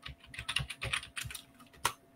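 Typing on a computer keyboard: a quick run of key clicks, ending with one louder keystroke near the end.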